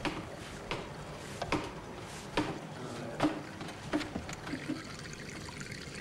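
Archive shelving knocking as a man climbs up it: a series of short, irregular knocks about once a second over a steady low hiss.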